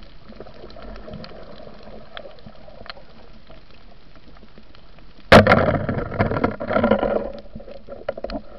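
Underwater sound picked up by a diver's camera: a low steady background with faint scattered clicks, then about five seconds in a sudden loud sharp crack, followed by about two seconds of loud bubbling, churning water.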